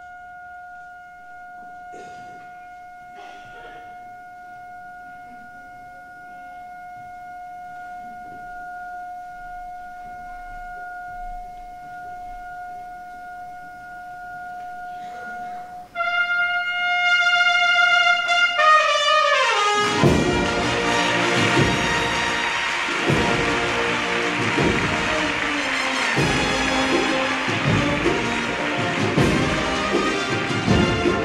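Brass band of an Andalusian agrupación musical holding one soft, steady note for about sixteen seconds, then coming in suddenly and loudly with a downward slide in pitch. From about twenty seconds in the full band plays with strong regular percussion beats.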